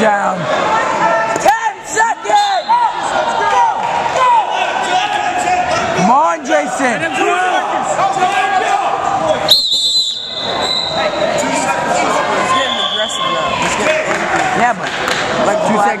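Wrestling shoes squeaking on the mat in many short, quick squeaks as two wrestlers move and grapple, over the steady murmur and calls of a gym crowd.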